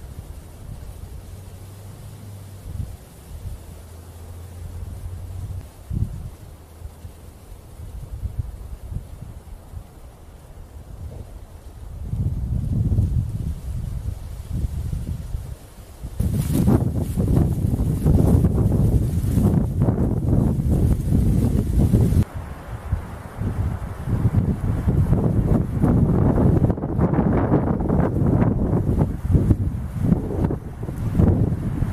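Wind gusting across the microphone with a low rumble, growing much stronger from about halfway through, with some rustling of leaves.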